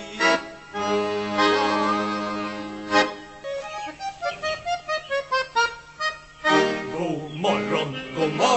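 Button accordion playing an instrumental interlude in a Swedish folk-pop song: held chords for about three seconds, then a run of short, quick separate notes, then held chords again near the end.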